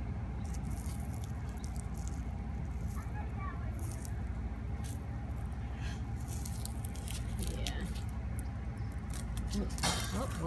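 A dry flower seed head crushed between fingers close to the microphone, giving scattered crackles and rustles. Under it runs a steady low rumble.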